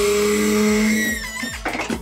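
Motion simulator seat's over-the-shoulder restraints lowering, with a steady mechanical hum that stops about halfway through.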